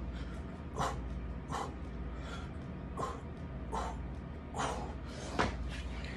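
A man breathing hard and grunting through six-count burpees, with a short forceful exhale about every three quarters of a second, over a steady low hum.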